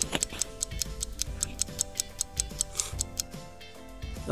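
A clock-ticking sound effect, about five or six quick, even ticks a second, over soft background music.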